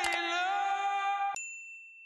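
Subscribe-button sound effects over a held musical note: a mouse click just after the start, then about 1.4 s in the note cuts off with a second click and a single bright bell ding that rings out and fades.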